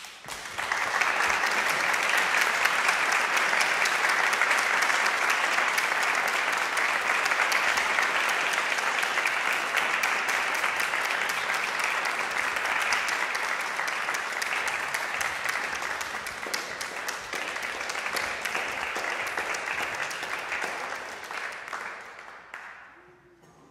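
Audience applauding, breaking out suddenly as the music ends and holding steady, easing off a little toward the end.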